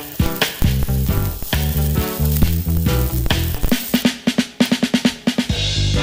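Background music with a drum kit and a bass line, with a quick run of drum strokes from about four to five and a half seconds in.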